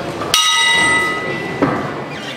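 Boxing ring bell struck once, ringing with several bright tones that fade over about a second, as the round gets under way. A short knock follows about a second later.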